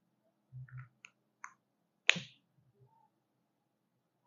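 Small plastic clicks from handling whiteboard markers: two light clicks, then one sharp snap about two seconds in, the loudest sound, like a marker cap being pressed on or pulled off. A few soft low thumps sit under them.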